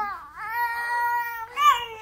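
Infant's fussing whine: one long, steady, high-pitched call, then a short rising-and-falling one near the end. It is the baby boy complaining to be picked up.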